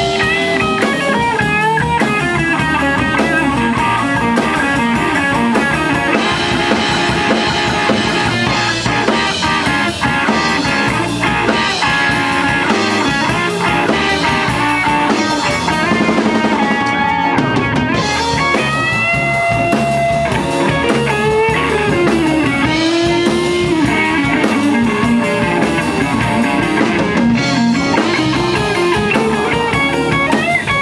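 Live band instrumental break: an electric guitar plays lead lines with bending notes over a drum kit, with no singing.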